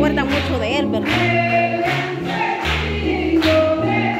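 Gospel worship song sung by a group of voices over a bass line and a steady beat of about two strokes a second.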